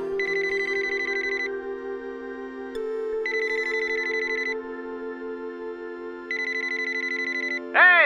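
A telephone ringing three times with a rapid trilling ring, each ring about a second and a half long, about three seconds apart, over soft held music. The call goes unanswered.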